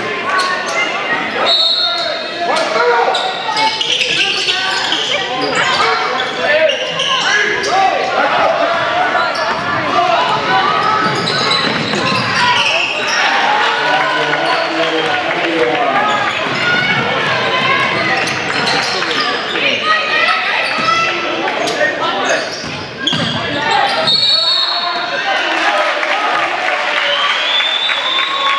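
Basketball game in an echoing gym: the ball bouncing on the hardwood court amid players' and spectators' voices, with a referee's whistle near the end as play stops.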